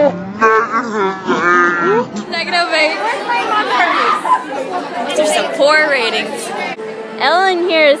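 Several young voices chattering and laughing over one another, broken by abrupt cuts. A steady held tone comes in under the voices near the end.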